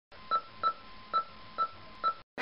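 Short electronic beeps of an intro sound effect, four in two seconds at uneven spacing, over a faint steady hiss.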